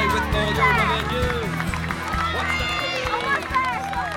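A song with steady accompaniment plays under people's voices calling and cheering.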